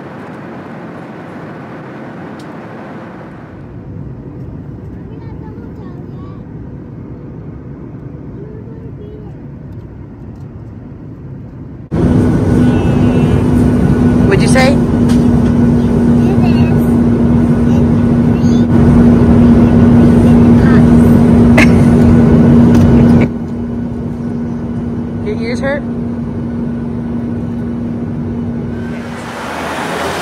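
Airliner cabin noise: a steady rush of engine and air noise, much louder for about eleven seconds in the middle with a steady low hum, which carries on more quietly afterwards.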